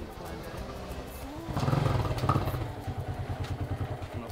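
Small motorcycle engine riding up and pulling to a stop. It is louder for about a second near the middle, then settles to an even idle.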